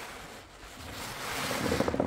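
A large sponge loaded with thick soapy foam being squeezed and kneaded by gloved hands in a tub of sudsy water: wet squelching with the crackle of bursting suds. It is quieter about half a second in and swells to a loud squeeze near the end.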